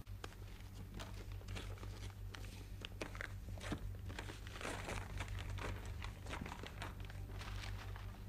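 Brown paper wrapping on a parcel being torn and crumpled open by hand: an uneven run of crinkling and ripping, over a steady low hum.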